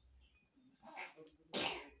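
A woman sneezing once. A short voiced 'ah' about a second in leads into a sudden, loud, noisy burst about one and a half seconds in, which fades quickly.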